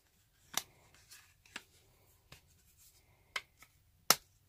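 An iPhone X being pressed into a slim hard clear-back case with a bumper: a few short sharp clicks of plastic snapping over the phone's edges, the clearest about half a second in and near the end.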